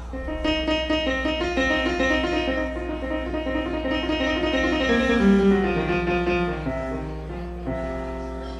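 A stage keyboard played live with a piano sound, a busy run of notes with a descending line about five seconds in.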